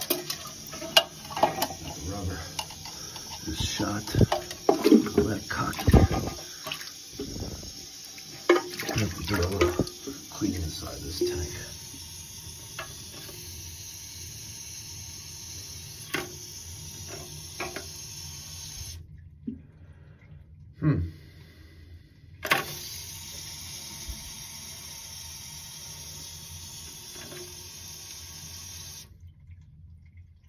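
Hands working toilet tank parts in water: a run of plastic and rubber knocks, clatters and splashes for the first dozen seconds or so, then a steady hiss of water running into the tank with a few scattered clicks.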